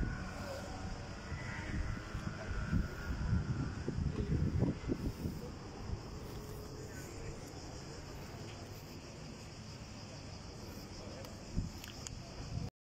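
Wind buffeting the phone's microphone in irregular gusts for the first five seconds or so, then a steadier low outdoor rumble.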